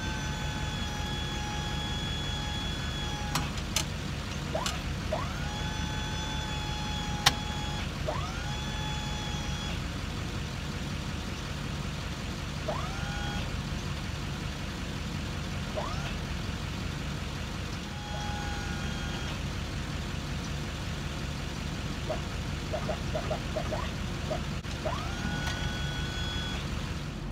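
Flatbed truck's engine idling steadily while its hydraulic hive-loading boom works. The hydraulics come on again and again with a whine that rises in pitch and then holds, and a few sharp clicks are heard between the runs.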